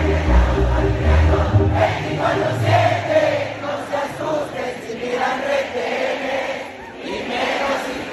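Live band music with a low bass line for about the first three seconds. The bass then drops out and a large crowd carries on singing along together.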